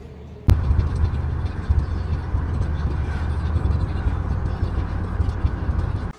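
Road and engine noise inside a moving car's cabin: a steady low rumble that starts abruptly about half a second in.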